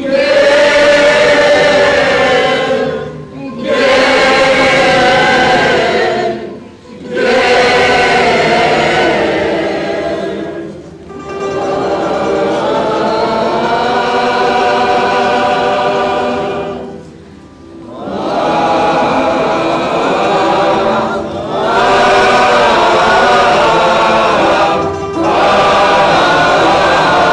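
Mixed choir of men's and women's voices singing in parts, long held phrases broken by short pauses every few seconds.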